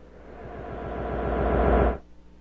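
A swelling sound effect from a TV sports montage, with a fast, even flutter, growing steadily louder for almost two seconds before cutting off suddenly.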